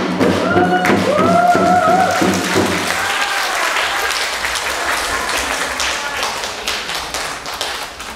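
Korean traditional music for a janggu dance: a melodic line that arches up and down in pitch over a low drone and drum strokes, ending about three seconds in. A dense patter of light taps follows and fades out.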